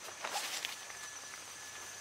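Faint rustling of nylon tent fabric being handled as a rain fly is pulled aside, heard mostly in the first moment, then a faint steady hiss.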